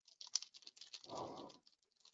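Faint, quick clicking of a computer keyboard being typed on, picked up by a call microphone, with a brief soft noise about a second in.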